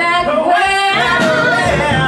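Live musical-theatre song: a singer holds a long vocal line whose pitch bends up and down, over a small pop-rock band accompaniment.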